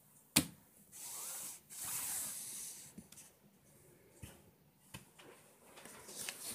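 Hands moving small die-cut cardstock pieces on a tabletop: a sharp click just after the start, then two short rustles of paper sliding, and a few light taps.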